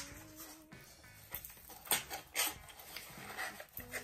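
A small kraft cardboard mailer box being folded by hand, its flaps tucked into the slot: a few short, quiet scrapes and taps of cardboard.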